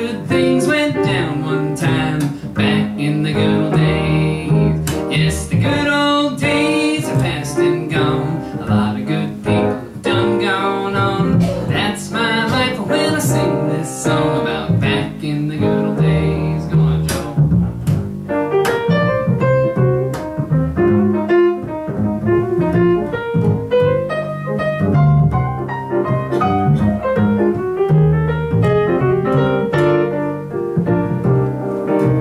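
Instrumental break played live on grand piano with a plucked upright bass walking underneath. About two-thirds of the way through, the piano moves from dense chords to sparser single-note melody lines.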